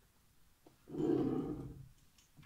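A person's audible sigh-like breath out, lasting just under a second, starting about halfway in.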